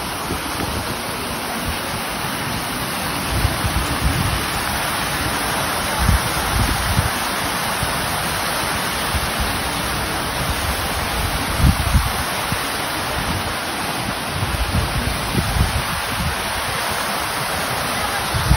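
Fountain jets splashing into a basin: a steady rushing hiss of falling water, with brief low gusts of wind on the microphone now and then.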